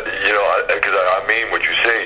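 Speech only: a person talking continuously, with a thin sound cut off above the middle of the voice range, like a phone line.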